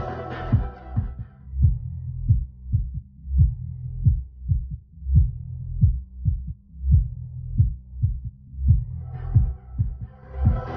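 A dance track played loud through a 10-inch Sphinx dual-coil subwoofer in a bandpass box, driven by a TPA3116D2 class-D amplifier: after about a second the upper parts of the music drop away, leaving deep bass thumps about every 0.6 s, and the full music comes back in near the end.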